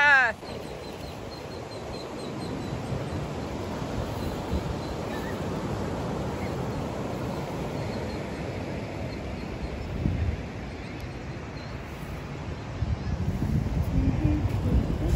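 Ocean surf washing on a sandy beach with wind on the microphone. A short pitched call dies away at the very start, and the wind noise grows louder and gustier near the end.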